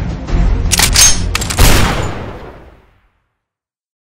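A quick volley of several pistol shots, over background music, starting about a second in; the last shot rings on and everything fades to silence by about three seconds in.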